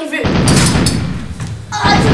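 A loud jumble of children's voices talking over each other, with a few thuds.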